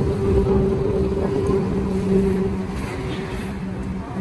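A road vehicle's engine running close by, a steady low hum that slowly fades, over traffic rumble.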